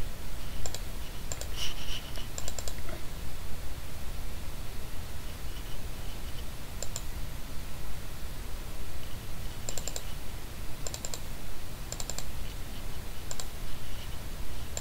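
Computer mouse buttons clicking: scattered single clicks and quick double clicks in small clusters, over a low steady hum.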